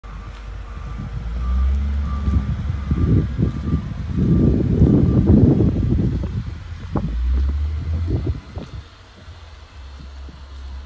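Wind buffeting and rumbling on the microphone of a handheld camera, loudest in the middle and dying down near the end. Faint repeated beeping sounds during the first few seconds, like a vehicle's reversing alarm.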